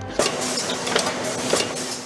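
Rotary ice cream cup filling and lidding machine running: a steady mechanical clatter over a low hum, with sharp clicks about every half second. It starts abruptly just after the beginning.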